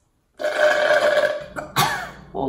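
A woman's drawn-out vocal sound of about a second, then a short sharp burst, as a shard of ice from the iced coffee she sips through a straw shoots back into her throat.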